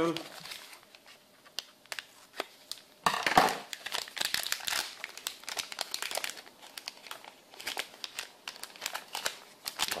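Small plastic anti-static component bags crinkling as they are snipped open with scissors and handled, a run of sharp crackles with a louder rustle starting about three seconds in.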